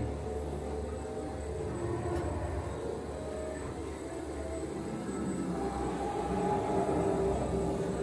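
The ride's atmospheric music score playing over the low, steady rumble of the ride vehicle travelling along its track. The held musical tones swell from about halfway through.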